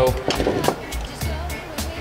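Hard-handled screwdrivers picked up and set down on a workbench: a scatter of light clicks and clatters of the tools against the bench and each other, over background music.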